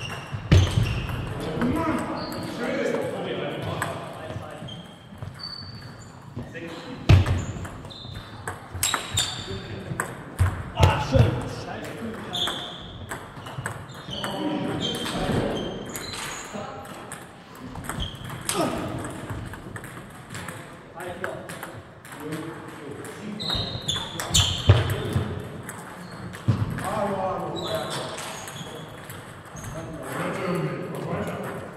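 Table tennis balls clicking off bats and tables, irregular sharp taps from more than one table in play, in a sports hall. Indistinct voices and chatter run underneath.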